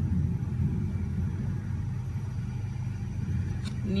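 A steady low hum and rumble with no distinct events.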